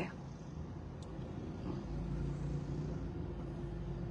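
Low vehicle engine rumble heard from inside a car, swelling slightly about two seconds in, with a faint steady hum.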